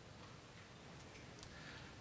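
Near silence: room tone in a hall, with a couple of faint ticks.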